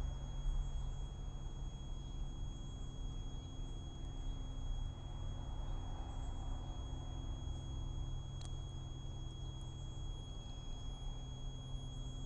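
Quiet room tone: a steady low electrical hum with a faint, steady high-pitched tone above it. A single short click comes about eight seconds in.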